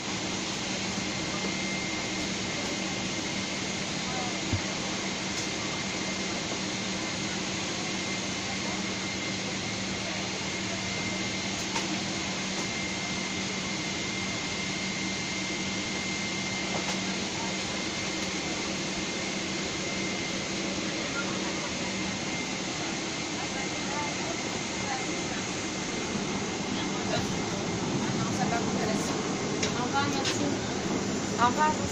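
Steady airliner cabin noise, the even rush of engines and ventilation air with a low hum and a faint high whine, growing slightly louder near the end.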